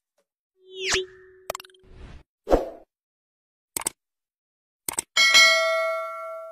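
Edited-in sound effects over dead silence: a sweeping whoosh about a second in, a few pops and clicks, then a bright bell ding that starts about five seconds in and rings out. These are the sounds of a subscribe-button and notification-bell animation.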